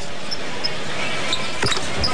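Steady arena crowd murmur during a basketball free throw, with a single sharp knock about a second and a half in.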